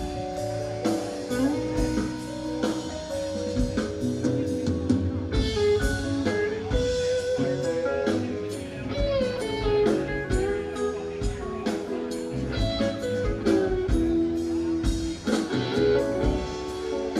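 A live rock band of electric guitar, bass, drum kit and organ playing an instrumental jam. A lead guitar line of sustained, bent notes runs over a steady drum beat.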